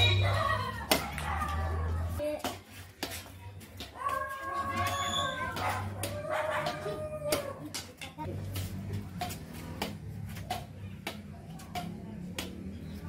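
Badminton rackets hitting a shuttlecock in a rally: sharp clicks again and again. Voices call out at times between the hits.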